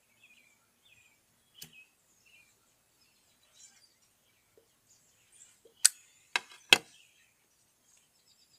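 A tobacco pipe being relit with a metal flip-top lighter: a sharp click early on, faint puffing, then three sharp metallic clicks in quick succession near the end as the lighter is handled and closed.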